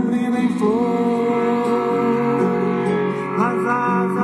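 A song with a singing voice playing from a small portable transistor radio tuned to a station, its held notes sliding between pitches.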